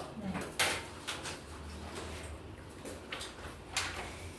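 Several short clicks and knocks of things being handled at a desk, the loudest about half a second in, over a low steady hum.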